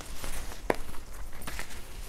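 Silk saree being handled and unfolded on a tabletop: irregular rustles and soft scuffs of the fabric, with one sharper tap about a second in.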